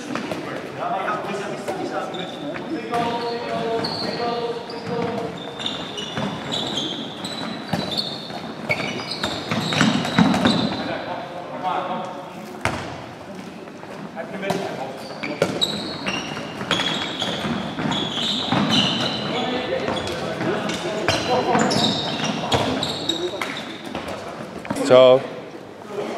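Handballs bouncing on a wooden sports-hall floor and being thrown and caught in a string of short knocks, with players' voices calling out, all echoing in the hall.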